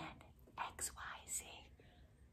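A woman whispering a few short, faint, breathy syllables, likely the letters X, Y, Z from the page she is reading.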